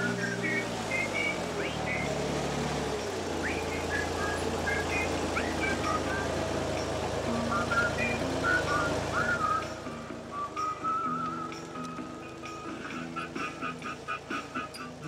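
The diesel engine of a Raup-Trac RT 55 K tracked forestry machine running as the machine moves on its tracks, its note dropping about three seconds in and then running on lower. Short high whistled chirps sound over it throughout.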